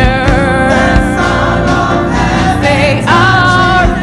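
Women's voices singing a gospel worship song together over instrumental backing; a new held note begins about three seconds in.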